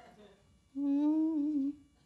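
A woman humming one slightly wavering note for about a second, a closed-mouth "mmm".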